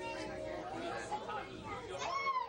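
Chatter of several people's voices talking at once among passengers in a railway car.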